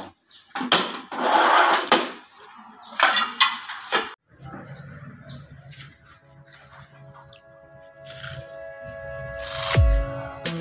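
A manual rail tile cutter scoring a ceramic floor tile, with rough scraping strokes and a couple of sharp snaps in the first few seconds. It cuts off suddenly, and background music with sustained tones follows, with a loud thump near the end.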